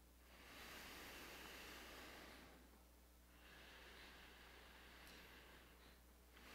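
Near silence: faint, slow breathing, two long breaths that swell and fade, over quiet room tone with a low steady hum.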